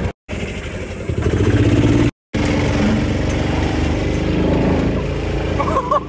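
Gasoline golf cart engine running steadily, broken by two brief cuts to silence, one near the start and one about two seconds in.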